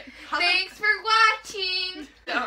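Girls' voices singing three short unaccompanied phrases, the last note held steady for about half a second.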